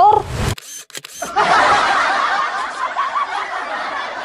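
Comedy edit sound effects: a camera-shutter click about a second in, then light comic music with canned laughter under a reaction shot.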